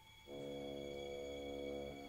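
Orchestral music: a low, sustained chord comes in about a third of a second in after a faint pause, is held steady, and moves to a new chord at the end.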